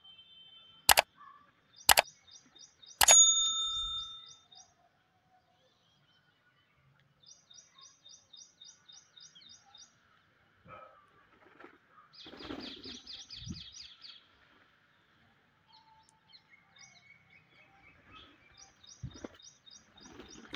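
Rose-ringed parakeets chirping in quick, evenly spaced runs of high notes, in several separate bursts, the fullest about halfway through. Near the start come three sharp clicks about a second apart, the last with a ringing ding.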